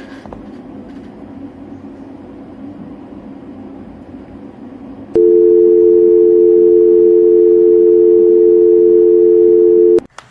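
Faint hiss, then about five seconds in a loud, steady telephone dial tone starts: two tones held together without a break, cut off suddenly at the end.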